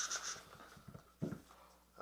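Faint rustling of a paper envelope being opened, with a brief breathy voice sound a little past a second in.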